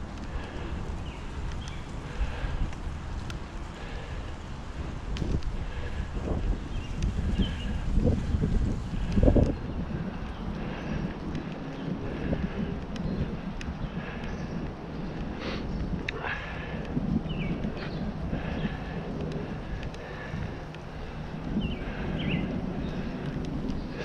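Wind buffeting a GoPro's microphone while riding a Specialized Diverge gravel bike over wet pavement, with a steady low rumble from the tyres. It grows louder in gusts about eight to nine seconds in, and a few short faint chirps come through.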